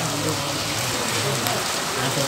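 Steady rain falling on a flooded paved road, the drops splashing into standing water. Low voices are faintly heard under the rain.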